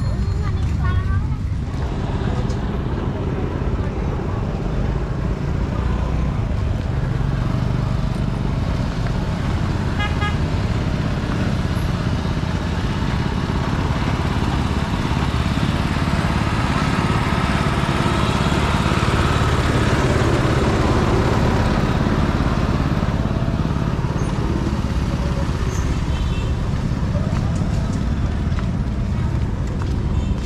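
City street ambience: a steady rumble of traffic and motorbikes with passers-by talking. A short horn toot sounds about ten seconds in and another near the end.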